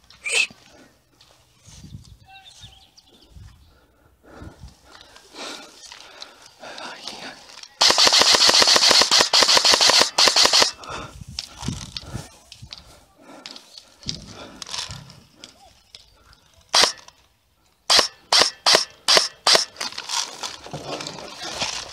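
Airsoft electric rifle (Amoeba AM-014 Honey Badger) firing a full-auto burst of about three seconds, a fast run of rapid clicks. Near the end comes a single shot, then a quick string of about seven semi-auto shots, roughly three or four a second.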